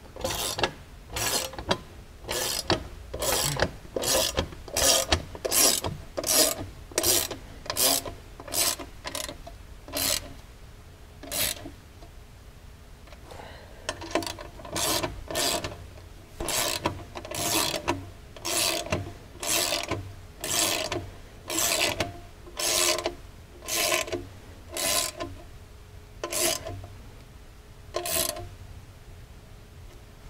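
Hand socket ratchet tightening the clamp bolts of a skid plate, a burst of ratcheting clicks on each swing. It keeps up a steady rhythm of about one and a half strokes a second, with a pause of a couple of seconds near the middle.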